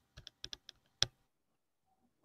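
A few computer keyboard keystrokes picked up over a video call: about five short clicks in the first second, the last one the loudest.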